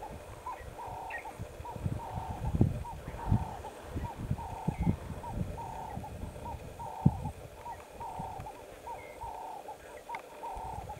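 A dove cooing over and over, a short note then a longer wavering one, roughly once a second. Irregular low thumps and rumbles sound underneath, loudest a few times.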